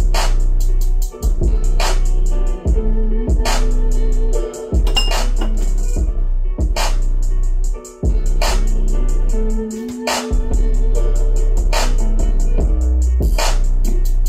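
Bass-heavy electronic beat played loud through a dual 2-ohm Dayton Ultimax 12-inch subwoofer in a 2 cu ft aeroported box tuned to 26 Hz, with deep sustained bass notes under a steady drum-machine beat. The deep bass drops out briefly about ten seconds in, then returns.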